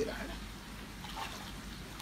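Faint water sloshing and trickling as a mesh hand net is swept through a fish pond by hand.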